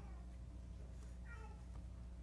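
Quiet room tone with a low steady hum during a pause in the talk. About a second and a half in comes a faint, short, high-pitched sound that rises and falls.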